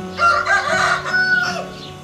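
A rooster crowing once: one pitched call of about a second and a half that rises and then holds level, over a faint steady hum.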